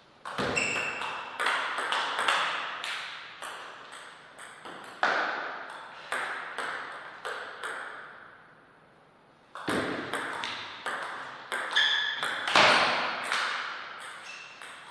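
Table tennis rallies: the ball clicking sharply back and forth off rackets and table, a couple of knocks a second. One rally runs until about eight seconds in, and after a short pause the next point starts.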